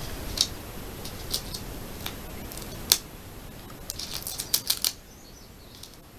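A paper sticker being peeled from its backing and pressed onto a sticker album page: scattered short crackles and clicks of paper, the sharpest a little before three seconds in and a quick run of them between four and five seconds.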